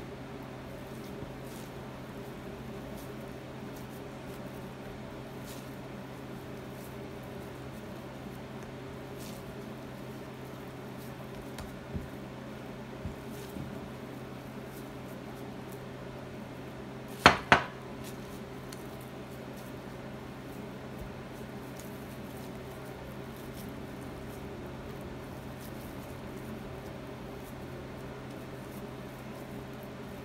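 Barley dough being pulled from a glass mixing bowl and shaped by hand, faint and soft over a steady low hum. A little past halfway, two sharp clinks in quick succession as the glass bowl knocks on the wooden board.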